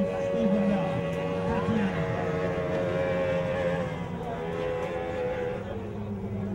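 Mercury outboard motor on a tunnel-hull racing powerboat running at speed: a steady drone whose pitch drops slightly in the second half. A man's voice is heard over it in the first couple of seconds.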